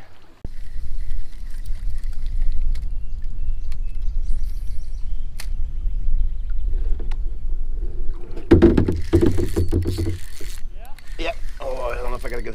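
Low, rumbling buffeting of wind on a chest-mounted camera's microphone, which starts suddenly about half a second in and grows heavier for a couple of seconds about two-thirds of the way through.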